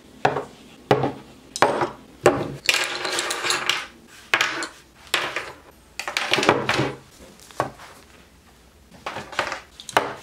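Bottles and spray cans being set down one by one on a desk: a series of sharp knocks and clinks of glass, plastic and metal against the tabletop, with a longer rattling clatter about three seconds in and again about six seconds in.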